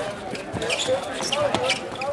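Basketball bouncing on a hard court as a player dribbles, a few sharp bounces, with players and onlookers calling out over it.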